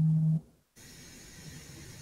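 A man's voice holding one steady low note at the end of his words, cut off about half a second in; after a brief dropout, faint hiss of an open line over a video call.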